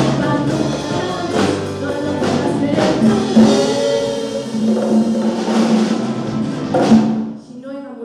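Live song with a woman singing into a microphone over a band with drums; a long note is held through the second half, and the song ends on a final drum hit about seven seconds in, cutting off sharply.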